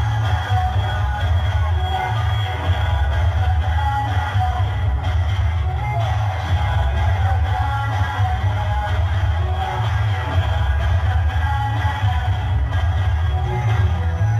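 Loud pop dance music with a heavy bass, played for a children's dance routine.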